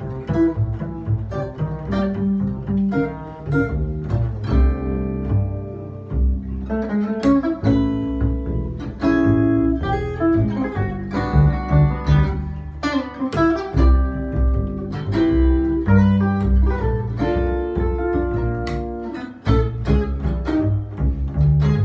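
Jazz guitar and double bass duo playing: an amplified archtop guitar plays a steady stream of single notes and chords over a walking, plucked upright double bass line.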